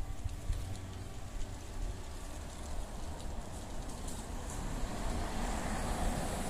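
An SUV driving past close by, its tyre and engine noise swelling over the last couple of seconds. Throughout, there is a steady low rumble underneath.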